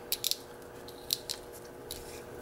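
A-1 Security Herty Gerty tubular key cutter turned by hand, its cutter shaving a depth-four notch into a brass tubular key: quiet, scattered small clicks and scrapes, a few close together at the start and single ones later.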